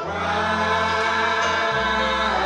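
Gospel praise singing: a man leads into a microphone with a group of voices, over sustained keyboard chords. The bass note shifts lower near the end.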